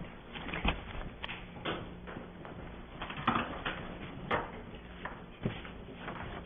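Meeting-room background of scattered light knocks and short rustles as papers and pens are handled on tables, over a faint steady low hum.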